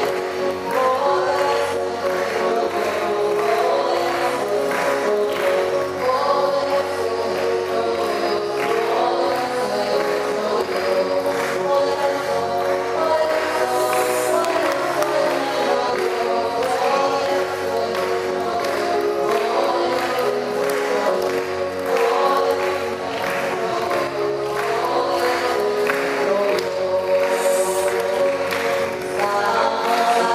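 A hymn sung by a group of voices over instrumental accompaniment with a steady beat. The music runs without a break.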